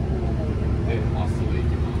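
Small route bus under way, heard from inside the cabin: a steady low drone from its engine with road noise. Faint voices come in briefly about a second in.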